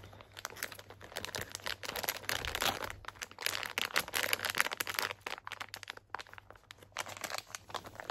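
Plastic snack pouch crinkling as it is handled and worked open, a dense run of irregular crackles that thins briefly a little after the middle.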